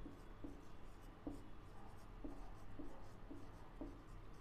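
Marker pen writing on a whiteboard: a string of short, faint strokes, a few each second, as words are written out by hand.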